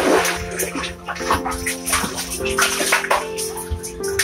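Water splashing and sloshing in bursts as a bucket of well water is hauled up by rope over a pulley, over steady background music.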